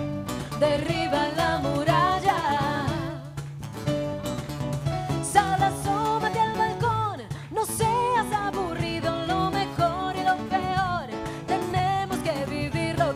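Women singing a song into microphones, accompanied by a small live band with guitar.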